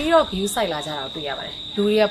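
Insects giving a steady, high-pitched, unbroken drone on one tone, under a woman's speech.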